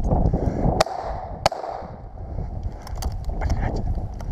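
Two shotgun shots, the first about a second in and the second under a second later, over steady rustling of dry grass and brush underfoot.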